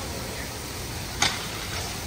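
Steady outdoor noise with a single sharp click a little over a second in.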